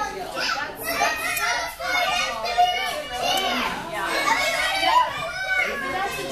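A crowd of young children talking and calling out over one another, many high voices at once.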